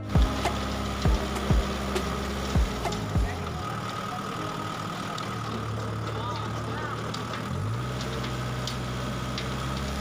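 Tractor engine running steadily while driving a rear-mounted rotary tiller through its PTO shaft, churning a pile of cattle-manure compost; the engine note steps up in pitch about three-quarters of the way through. Several dull low thumps sound in the first three seconds.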